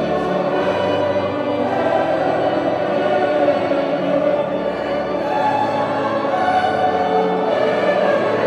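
Large mixed choir of men and women singing a classical choral piece, accompanied by a string orchestra of violins and cello, on steady, held chords.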